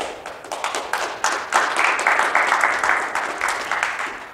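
Audience applauding: scattered claps at first, thickening into full applause about a second and a half in, then fading near the end.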